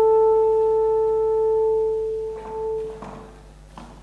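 Alto saxophone holding one long, soft, almost pure note that fades away a little over two seconds in. Faint scattered noises and a short click follow near the end.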